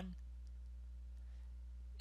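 Steady low electrical hum, the background noise of the narration recording, left after a spoken word ends at the start.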